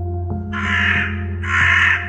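A crow cawing twice, two harsh calls of about half a second each, over ambient music with a low steady drone.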